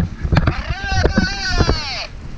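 A person's drawn-out whoop, high and held for over a second before falling away, over thumps and crunches of boots in snow and wind rumbling on the microphone.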